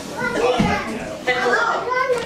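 Young children's voices babbling and chattering as they play, with a dull low thump just over half a second in.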